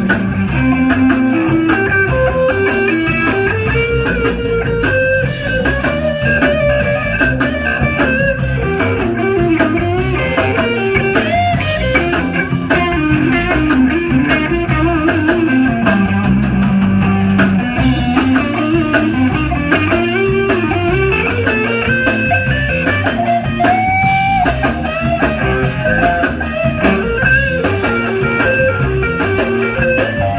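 Live blues band playing an instrumental passage: electric guitar lead over drums and bass, continuous and loud.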